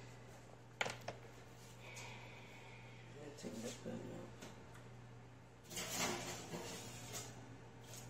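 Kitchen handling sounds over a steady low hum: two sharp clicks about a second in, then a louder burst of rustling around six seconds in.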